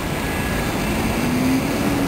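Hiss and band noise from a homebrew 40/20 metre direct conversion receiver's speaker while its front-end peaking control is adjusted between bands. A low whistle rises slightly in pitch and then falls.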